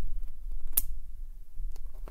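Handling noise from a picture book being held up and moved in the hands: one sharp click a little under a second in and a couple of faint taps near the end, over a low steady hum.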